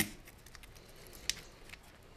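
Faint handling of a coiled blue medium-pressure hose being unwound by hand: light rustles and small ticks, with one sharper click a little over a second in.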